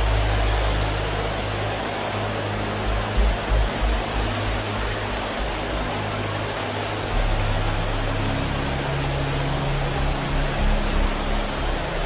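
Sustained low keyboard chords held under a dense, steady wash of many voices from a congregation praying aloud at once.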